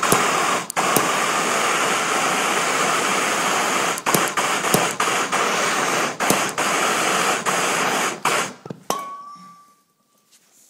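MAPP gas torch running with a steady hiss as it heats a copper battery ring terminal to melt 40/60 rosin-core solder, with scattered sharp crackles. The torch shuts off about 8 seconds in, and a thin steady whistle follows.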